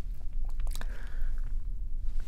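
A pause in a man's speech: a low, steady hum with a few faint mouth clicks and lip sounds in the first second.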